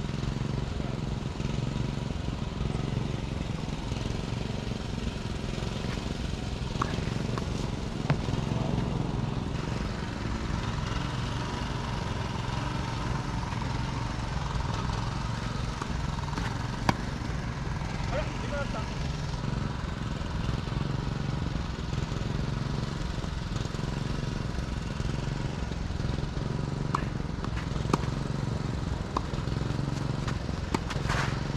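Tennis ball struck by rackets during a rally: a few sharp, isolated pops, one about eight seconds in, one about seventeen seconds in and several close together near the end. They sit over a steady low rumble of background noise.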